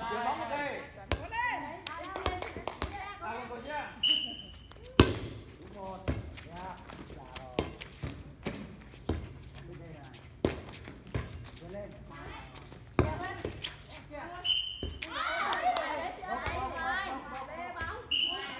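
Rally in a women's air volleyball game: hands striking the light inflated ball, sharp slaps every second or two with the loudest about five seconds in, amid the players' shouts and chatter.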